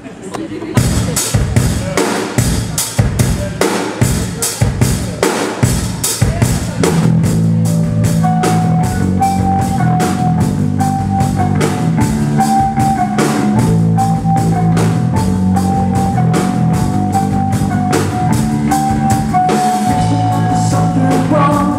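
Live rock trio starting a song. A drum kit begins alone with a steady beat about a second in, and bass and electric guitar join around seven seconds in, the full band then playing together.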